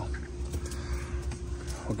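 Low, uneven wind rumble on the microphone, with a faint steady hum under it.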